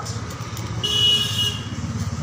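A single short vehicle horn toot of about two-thirds of a second, midway, over a steady low rumble of traffic.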